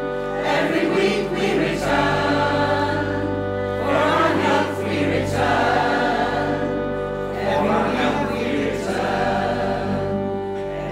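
Mixed-voice choir singing in phrases that swell every second or two over long held notes, with a violin playing along.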